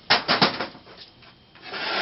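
A few quick knocks as parts are handled and set down, then, about a second and a half in, a steady scraping rub as a heavy stand's base is slid across a tabletop.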